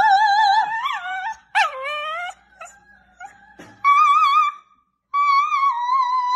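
A woman singing high, wavering notes and a small shaggy dog howling along with her: several long held tones with a quick slide down about a second and a half in, and a short break before the last long note.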